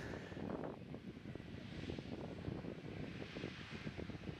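Faint, steady outdoor background noise with a low rumble of wind on the microphone.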